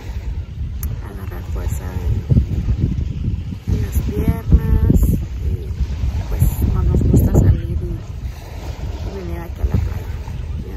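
Wind buffeting the phone's microphone in uneven gusts, a loud rumbling roar, with a voice speaking in short snatches now and then.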